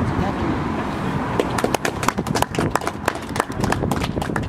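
A small crowd clapping, starting about a second and a half in, over a low murmur of voices.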